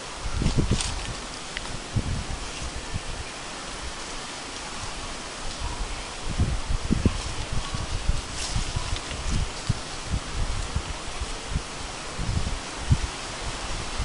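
Leaves rustling in the wind, with gusts buffeting the microphone in irregular low thumps.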